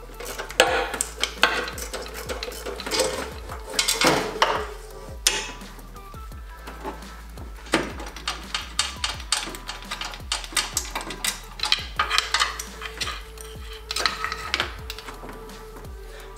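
Hand tools, a socket wrench on extensions, clinking and knocking against metal fittings in an engine bay: irregular sharp metallic clicks throughout.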